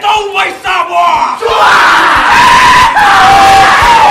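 Samoan dance group shouting in chant, then from about a second and a half in a loud outburst of many voices yelling and screaming with long held cries.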